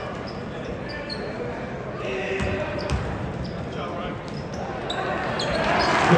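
Basketball bouncing on a hardwood gym floor during a game, over the chatter of a crowd in a large gym; the crowd noise grows louder near the end.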